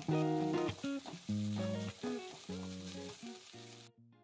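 Chopped onion, garlic and ginger sizzling in hot oil in an aluminium kadhai as a metal spatula stirs them. Background music with melodic notes plays over the frying and cuts off near the end.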